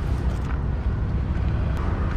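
Steady low outdoor rumble of wind on the microphone and vehicle noise, with no distinct knocks or clicks.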